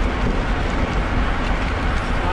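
Steady wind rush on the microphone of a bicycle-mounted camera riding at about 20 mph, mixed with road-bike tyres running on asphalt.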